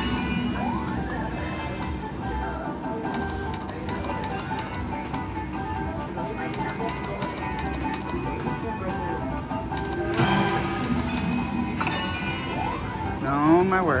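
Extreme Wild Lanterns video slot machine playing its electronic reel-spin music and chimes through several spins in a row. There is a short rising sweep about half a second in, and a louder swooping sound near the end.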